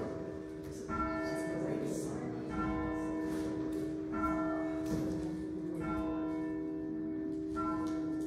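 A bell tolling slowly, struck five times at even intervals of under two seconds, each stroke ringing on with a steady low hum beneath.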